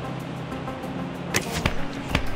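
A recurve bow shot near the end: a few sharp snaps as the string is loosed and the arrow strikes the target, over background music with steady low tones.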